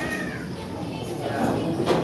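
Pool balls clicking together sharply once near the end, over low murmuring voices, with a short high falling cry right at the start.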